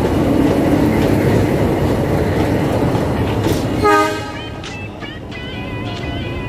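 A metre-gauge passenger train's coaches rolling past at close range: a loud, steady rumble and rattle of wheels on the track that drops away about four seconds in.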